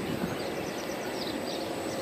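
Steady outdoor background noise of open farmland with a few faint bird chirps.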